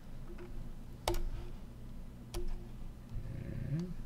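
Two sharp computer mouse clicks about a second and a quarter apart, then a fainter click near the end.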